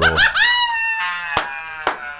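A man's loud, high-pitched laugh that slides down in pitch over the first second, then carries on as breathier laughter with a couple of sharp clicks.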